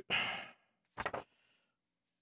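A person sighing: a breathy exhale that fades over about half a second, then a shorter soft breath about a second in.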